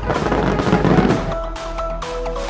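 A dense burst of firework crackling and bangs lasting just over a second, over electronic dance music that carries on once the crackling fades.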